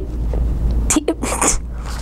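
A boy's short, breathy stifled laughter: a few quick puffs of breath about a second in, over a low steady hum.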